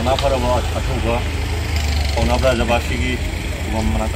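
A person speaking in short phrases, with a steady low rumble underneath.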